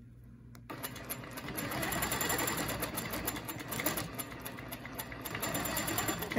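Longarm quilting machine starting to stitch about a second in and then stitching steadily, the needle going in a fast, even rhythm as it sews along the edge of a quilting ruler.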